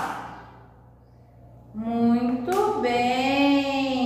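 A woman's voice draws out a long, sung-like vowel at a fairly steady pitch, starting a little under two seconds in and carrying on past the end, with a short click about halfway through it.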